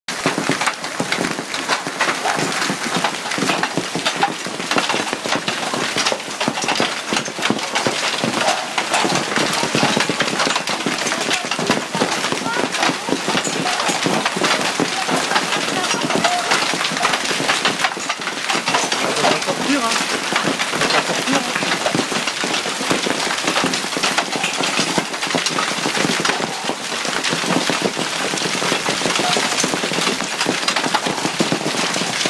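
Hailstones pelting a stone-paved terrace and a swimming pool in a heavy hailstorm: a loud, dense, continuous rattle of countless tiny impacts that does not let up.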